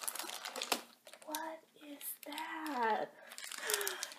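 Quick clicks and rustling as a plastic-bagged toy is pulled out of a cardboard advent-calendar door, then a woman's drawn-out wordless exclamations of surprise.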